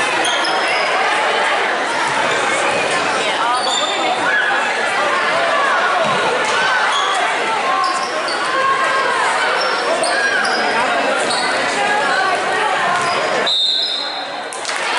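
Basketball being dribbled and sneakers squeaking on a gym's hardwood floor over spectators' chatter. A referee's whistle blows near the end.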